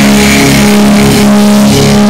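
Live rock band holding a loud, distorted electric guitar and bass chord that rings on steadily, with little drumming; the recording is overloaded.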